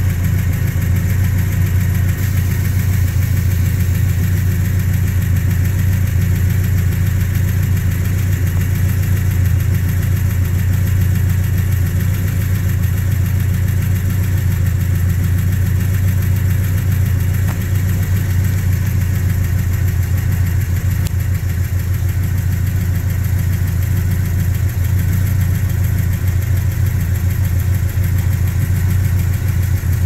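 Built 468 cubic-inch big-block Chevy V8 in a 1968 Chevrolet Chevelle idling steadily through long-tube headers and dual exhaust, with no revving.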